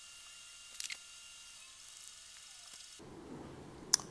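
Quiet room tone: a faint steady hiss with a thin high hum, broken by a few faint clicks, the sharpest one just before the end.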